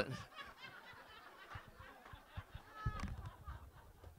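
Faint chuckling and laughter from a small audience reacting to a joke, with a brief soft bump about three seconds in.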